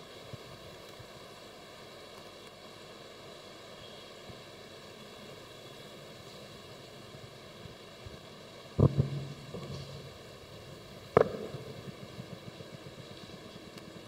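Quiet, steady hiss of room tone, broken twice near the end by a short sharp thump, typical of a handheld microphone being bumped or handled.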